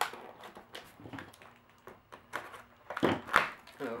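Handling noise from a cardboard box and packing tape as a plastic Nerf blaster is worked loose: scattered light rustles and crinkles, then a few louder scrapes and knocks about three seconds in.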